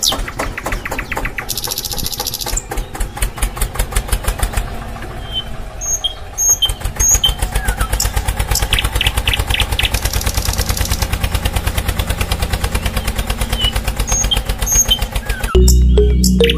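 A small diesel engine chugging at a fast, even beat, with a brief dip in level about six seconds in.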